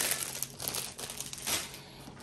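Clear plastic packaging bags crinkling as they are handled, in a few short rustles that fade toward the end.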